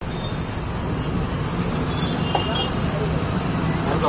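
Steady road-traffic noise with a low rumble from a busy street, with a couple of light clicks about two seconds in.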